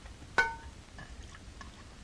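A single sharp clink of crockery about half a second in, ringing briefly, followed by a few faint clicks.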